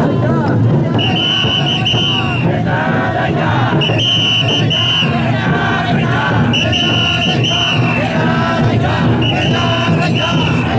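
Crowd of taikodai (chōsa) float bearers shouting and chanting. A long, high, steady tone sounds four times, roughly every two and a half seconds.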